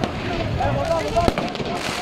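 Voices of a street crowd calling out, with one sharp bang a little over a second in and a short hiss near the end.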